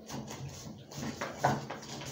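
A long cooking utensil stirring and scraping inside a stainless steel pot on the stove, making a run of irregular knocks and scrapes.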